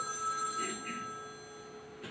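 A pause in a man's speech: low room tone carrying several steady, high-pitched ringing tones, with a few faint voice sounds early on that die away.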